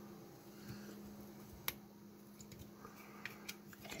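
Faint clicks and ticks of an MCP23017 DIP chip's metal legs being worked into an IC socket on a circuit board, with one sharper click a little under two seconds in and a few lighter ticks after it, over a low steady hum.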